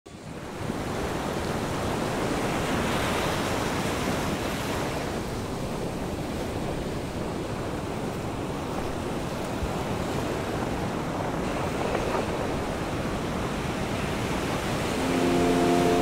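Small ocean waves washing up on a sandy beach: a steady surf wash that swells and eases. Music fades in near the end.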